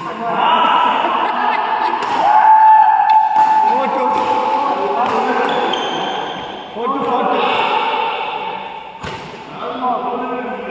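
Loud, drawn-out voices in a large echoing hall, some held on one pitch for about a second, over a few sharp racket strikes on a shuttlecock during a badminton rally.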